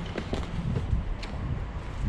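Low rumble of wind and handling noise on a body-worn camera's microphone, with a few faint clicks and knocks of footsteps and movement over construction debris and steel bars.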